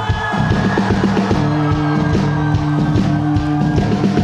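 Live rock band playing an instrumental passage: a drum kit beat under long held notes.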